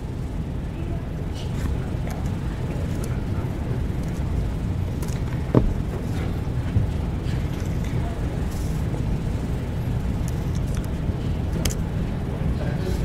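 Steady low room rumble picked up by the lectern microphone, with scattered faint clicks of laptop keys as terminal commands are typed.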